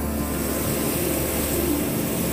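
Hot air balloon's propane burner firing, a steady roar, over background music.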